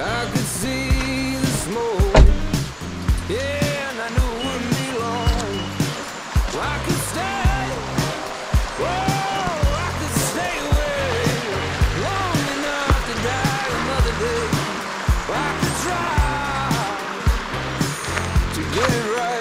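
Background music: a song with a steady beat, bass and a singing voice.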